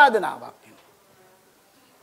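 A man's voice ends a phrase on a drawn-out, falling pitch that fades within the first half second. Then there is a pause of near silence, only faint room tone, until he speaks again just after.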